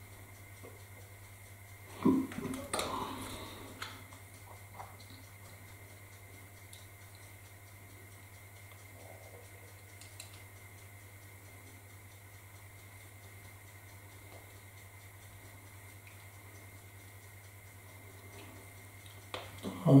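Small handling noises from fitting two little screws to a model railway catenary mast: a short burst of clattering and rustling about two seconds in, then a few faint clicks, over a steady low hum.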